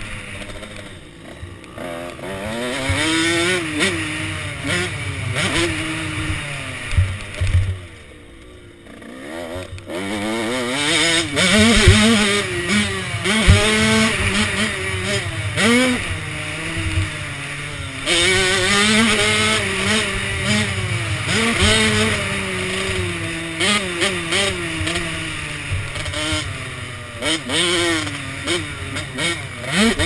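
KTM SX 105 two-stroke dirt bike engine, revved hard and shut off again and again as it is ridden around a motocross track, with a steady rush of wind noise. About eight seconds in the throttle is closed and the engine falls quiet for a couple of seconds before it revs up again.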